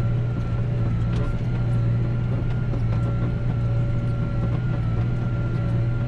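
McCormick MC130 tractor engine running steadily under load while pulling a disc harrow, heard from inside the cab: an even, deep drone with a thin, steady whine above it.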